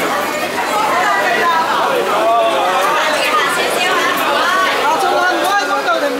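Crowd chatter: many people talking at once, their voices overlapping into a loud, steady babble with no single speaker standing out.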